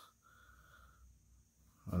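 Near silence in a pause between a man's words, with a faint brief sound in the first second; his speech starts again at the very end.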